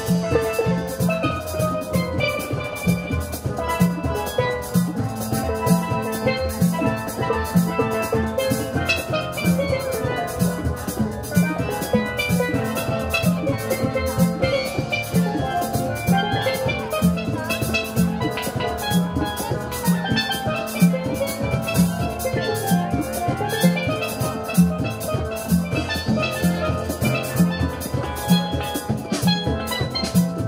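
Steel pan ensemble playing a tune, the pans carrying the melody over a steady beat of about two strokes a second from drums and lower pans.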